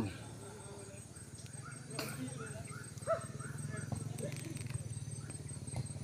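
Faint outdoor field ambience: distant players' voices over a steady low hum, with a run of short high chirps about two to three seconds in and a few faint knocks.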